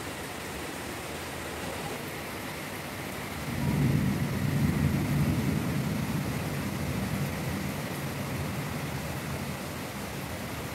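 Steady rain, with a low rumble of thunder that swells about three and a half seconds in and fades away over the next few seconds.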